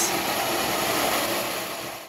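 Large pulse motor running: its drum rotor, on ceramic bearings, spins with a steady whirring hiss, fading out at the end.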